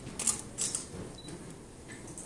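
Camera shutters clicking in two quick bursts within the first second, over low room noise.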